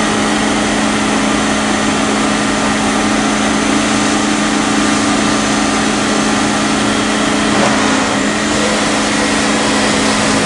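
Heckler & Koch BA 40 vertical machining center running with a steady machine hum and whir while its table traverses, with spindle off. The pitch of the hum shifts slightly near the end.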